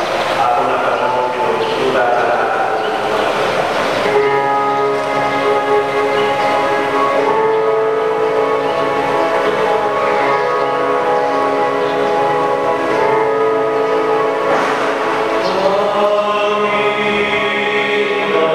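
A choir singing slowly in long held chords that change every few seconds.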